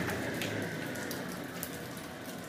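Water dripping and trickling off a wet lapidary sander and its diamond wheel, over a steady low hum from the machine, with a few light ticks.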